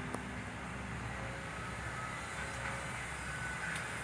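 A steady low rumble, with one sharp click just after the start and a few faint lingering tones above it.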